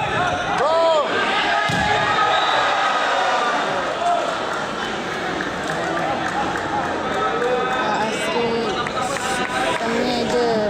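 Indoor volleyball rally in a large echoing sports hall: a couple of sharp hits of the ball and sneaker squeaks on the court floor in the first two seconds, over a continuous din of spectators' and players' voices.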